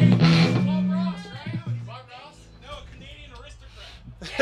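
Electric guitar and bass played loosely on a live stage, a strum and a few held low notes that stop about a second in, followed by faint talking.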